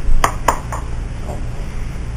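Two sharp knocks a quarter second apart near the start, with a couple of fainter taps after them, over a steady low room hum.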